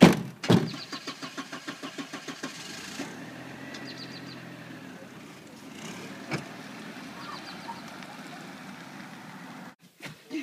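Two car doors slam shut on a white Audi A4 1.8T, then a rapid even ticking runs for about two seconds. From about three seconds in, the car's 1.8-litre turbocharged four-cylinder engine runs steadily, with one sharp thump about six seconds in.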